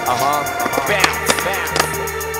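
Skateboard wheels rolling on concrete, with a few sharp clacks of the board about one to two seconds in, under a hip-hop music track.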